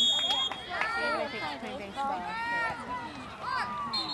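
A referee's whistle blows one steady shrill note that stops about half a second in, then high-pitched voices call out from the sideline. A short second whistle note sounds at the very end.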